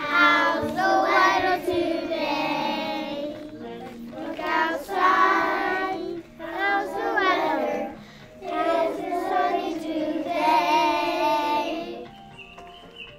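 A group of young children singing a song together, in phrases with short breaks about six and eight seconds in.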